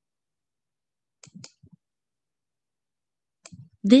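A few faint computer mouse clicks, a short cluster about a second and a half in and a couple more near the end, with silence between.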